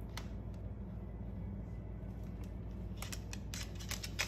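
Quick sharp clicks and taps of a Moluccan cockatoo's claws and beak on a hardwood floor, one about a quarter second in and then a rapid run of them near the end as he grabs and swings a plush toy, over a low steady hum.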